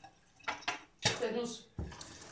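Four short clinks and knocks of a drinking glass against the table and bottles.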